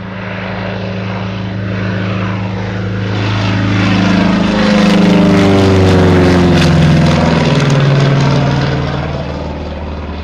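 Republic P-47D Thunderbolt's 18-cylinder Pratt & Whitney R-2800 radial engine and propeller on a low flyby. The drone builds as the fighter approaches, is loudest overhead about midway, then drops in pitch and fades as it passes and flies away.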